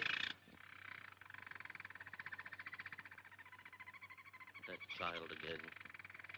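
Caged canaries trilling: a long, rapid, even trill that stops for a moment about five seconds in, then starts again.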